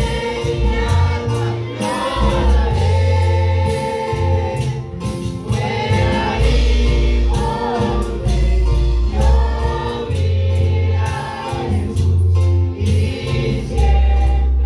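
Live gospel worship music over a PA: a man singing into a microphone, backed by drums, keyboard and a deep bass line of held notes.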